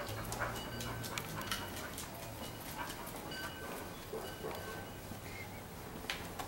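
A dog making short high calls, mixed with many sharp clicks and taps.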